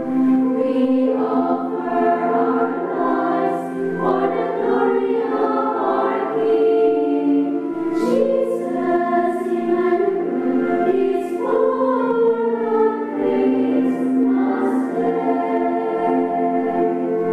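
Small women's choir of nuns singing a Christmas song together, with the lines 'He is the light of the world' and 'Jesus, Emmanuel, is born on Christmas Day.'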